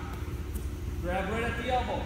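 A man's voice speaking from about a second in, over a steady low rumble.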